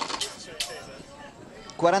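A man's speech in Italian: a phrase trails off, there is a pause of about a second with only faint background noise, and the speech picks up again near the end.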